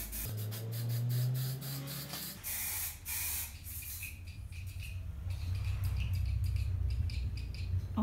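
Aerosol spray-paint can spraying in short hissing bursts, fewer in the second half, over a low steady hum. The can is not spraying as it should, which the painter puts down to having shaken it wrong.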